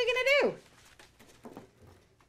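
A woman's high, raised voice asks a short question. It is followed by faint rustling and light ticks of printed paper pages being leafed through.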